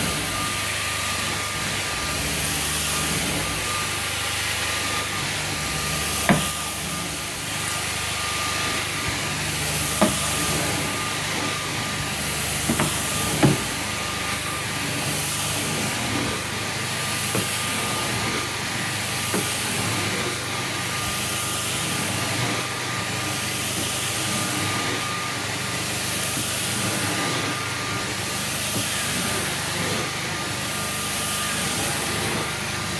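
Carpet-extraction wand pulling water and air off the carpet: a steady loud hiss with a thin steady whine, the high hiss swelling and fading about every two seconds as the wand is stroked back and forth. A few sharp knocks stand out.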